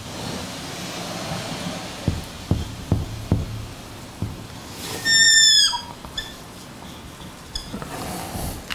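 A dry-erase marker on a whiteboard makes a few short taps as dashes are drawn. About five seconds in comes a loud, high-pitched squeak lasting about half a second as a stroke is drawn across the board.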